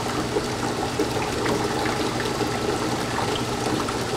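Water jet from the nozzle of an impact-of-jet apparatus running steadily against the 45-degree impact plate, with the pump running: a steady rush of water over a low, even hum.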